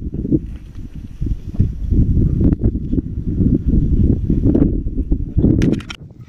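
Hunting dogs growling and worrying a downed animal close to the microphone, a continuous, choppy low rumble.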